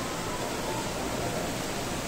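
Steady, even hiss of the ambience in a large indoor mall atrium, with faint distant voices mixed in.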